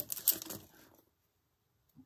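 A few small clicks and light rustling of small plastic craft items handled on a cutting mat, stopping about half a second in, then silence.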